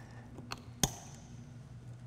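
A steady low hum under quiet room tone, with a few faint taps. A little under a second in comes one sharp clink from containers and utensils being handled at a countertop blender.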